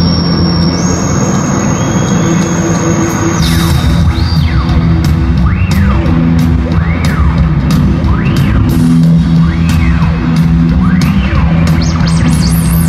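Live band music heard from among an arena audience: the instrumental opening of a song, with sustained high tones at first, then drums with cymbal hits and bass coming in about three and a half seconds in.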